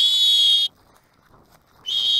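Dog-training whistle blown twice: two steady, high-pitched blasts of under a second each, about a second apart, given as a command to a German shorthaired pointer in field training.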